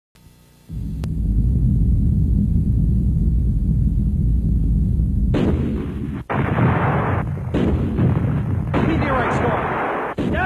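Dramatic explosion sound effects: a deep, steady rumble for about five seconds, then a run of loud blasts, each lasting a second or more, with short gaps between them.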